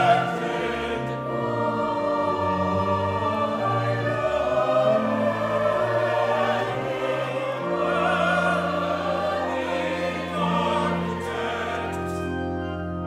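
Church choir singing a sustained passage with organ accompaniment; a held low organ note enters near the end.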